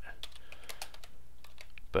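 Computer keyboard being typed on: a quick, uneven run of keystroke clicks as code is entered.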